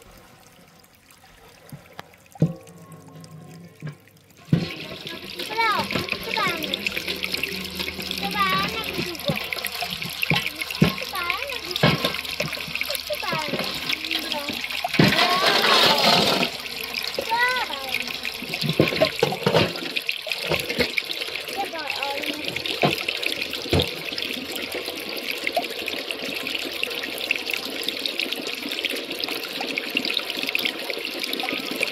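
Water trickling and splashing, starting suddenly about four and a half seconds in and running on steadily with many small gurgles and plinks, with a brief louder surge of splashing about midway.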